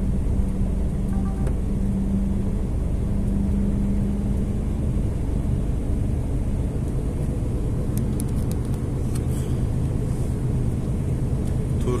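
Steady engine and road rumble heard from inside the cab of a moving truck, with a low engine hum. A few faint clicks come about eight seconds in.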